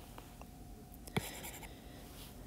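A stylus tapping once on a tablet screen about a second in, followed by a brief light scratching.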